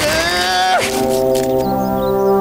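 Music score: a short sliding horn-like note that settles into a held brass chord.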